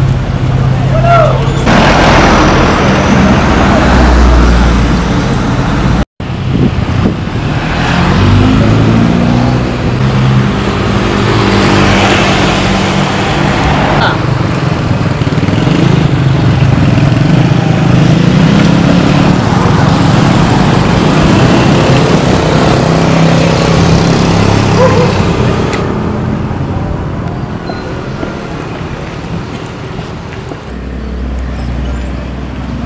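Small pickup truck engines running as loaded trucks drive slowly past, the engine note stepping up and down, with voices in the background.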